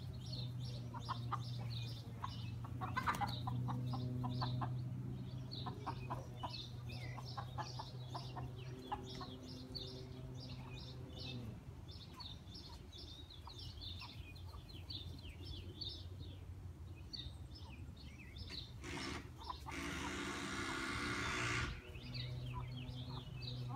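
Backyard chickens clucking, over many short, high bird chirps throughout. A steady low hum runs under the first half and then stops, and a couple of seconds of hissing noise come near the end.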